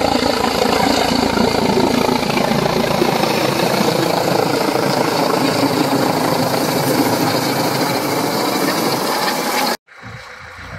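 Helicopter flying low overhead: steady, loud rotor and turbine engine noise that cuts off suddenly near the end.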